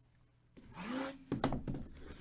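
Plastic shrink wrap being pulled and torn off a cardboard box, starting about half a second in, with a few sharp crackles of the film.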